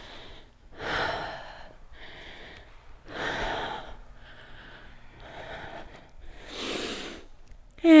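A person breathing hard through a held yoga lunge: three louder breaths about three seconds apart, with fainter breaths between and no voice in them.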